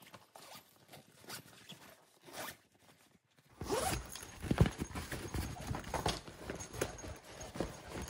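A zipper on a nylon compression packing cube being pulled along, with the fabric rustling as it is handled, starting about halfway through.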